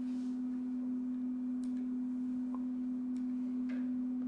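A steady hum held at one pitch, unchanging throughout, with a few faint ticks.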